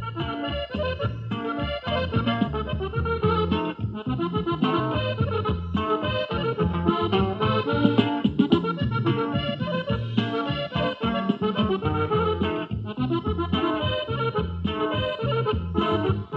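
Instrumental break of a Sonoran-style cumbia: accordion playing the melody over a bass line and a steady beat.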